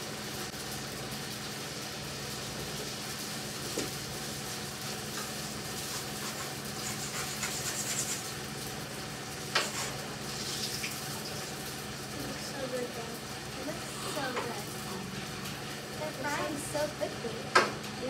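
Rounds of pizza dough frying in hot oil in a pan, with a steady sizzle, over a steady low hum. A few sharp clicks come through, one about halfway and one near the end.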